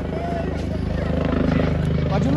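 Helicopter flying overhead, its rotor blades beating in a steady rapid chop that grows slightly louder as it approaches.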